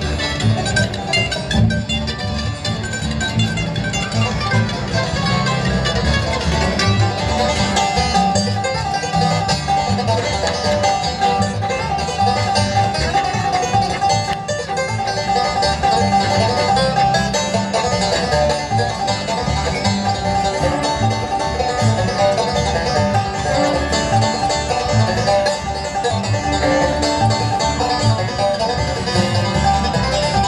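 Bluegrass band playing an instrumental live, with banjo, mandolin, acoustic guitar and upright bass picking along together at a steady level.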